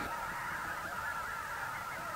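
A large flock of migratory birds taking off from a wetland, their many calls blending into a steady distant din.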